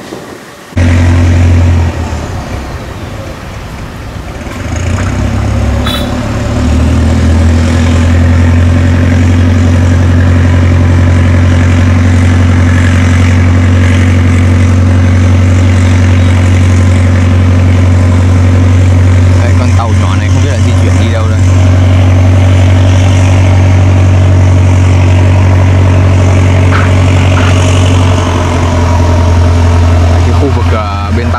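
The engine of a small wooden river boat running steadily with a low drone. It comes in suddenly about a second in.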